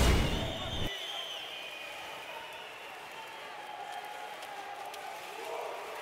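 A deep booming hit with a whoosh, a broadcast transition sting for an on-screen graphic, fading within about a second. Then a faint, steady arena crowd noise.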